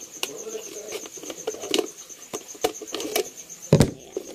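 Empty plastic Coke bottle being handled and turned in the hands: scattered sharp crackles and clicks of the thin plastic, with one louder knock near the end.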